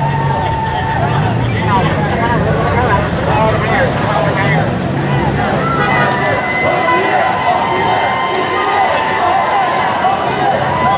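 Motorcade of police motorcycles and cars pulling out at low speed, engines running under a crowd's babble of voices. A steady high-pitched tone sounds at the start and again from about six seconds in.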